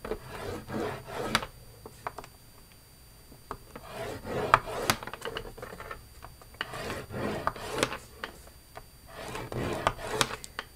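A scoring stylus drawn down the grooves of a scoreboard through cardstock: several dry rubbing strokes of about a second each, with a few sharp clicks between them.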